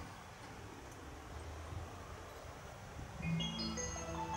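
Station platform speakers start playing the train-approach melody about three seconds in, a bright chiming, marimba-like tune, over a low steady outdoor rumble; it signals that a train is about to arrive.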